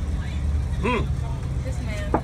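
Steady low rumble of a school bus's engine, heard from inside the passenger cabin, with a short burst of a passenger's voice about a second in.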